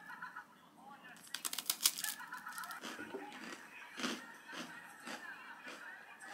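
Crunching bites and chewing of a crisp toasted biscuit: a dense run of loud crunches about one to two seconds in, then single crunches about every half second.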